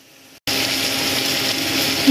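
Masala okra frying in an aluminium kadhai: a steady, loud sizzle that cuts in suddenly about half a second in, after a quiet start.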